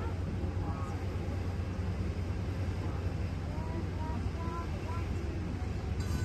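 A steady low rumble, with faint, scattered voices of people talking a little way off.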